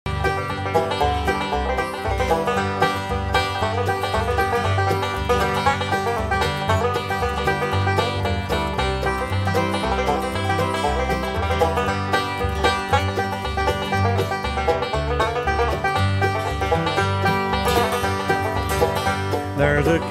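Bluegrass music: a banjo-led instrumental intro with a walking bass line, starting suddenly out of silence. A voice comes in singing right at the end.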